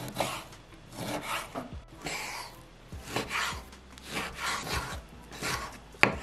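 A chef's knife slicing through smoked bacon and meeting a wooden cutting board in a series of irregular strokes, the bacon being diced into small cubes.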